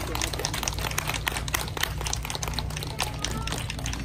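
A small audience applauding: a dense, uneven patter of individual hand claps over a steady low hum.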